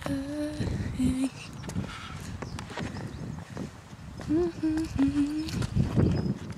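A woman humming short, steady held notes: a phrase at the start and another about four seconds in. Wind buffets the microphone throughout.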